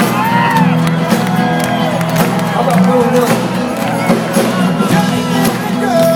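Live rock band with electric guitars and drums playing, recorded from within the audience, with crowd voices over the music.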